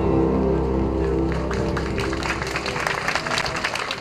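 The final sustained chord of a pop ballad rings out and fades, while audience applause builds in from about a second and a half in.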